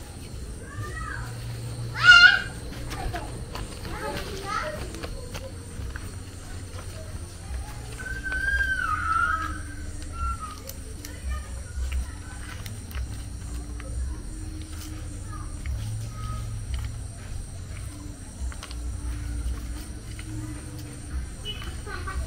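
Children's voices calling and playing in the background, with a loud shout about two seconds in and a longer call a few seconds later, over a steady low hum.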